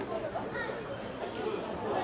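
Indistinct chatter of voices from spectators and players at a rugby league ground, no single voice clear.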